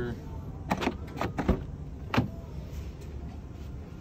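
The driver's door of a 2017 Porsche Panamera being opened by its handle: a series of sharp clicks and knocks from the handle and latch, loudest about one and a half and two seconds in.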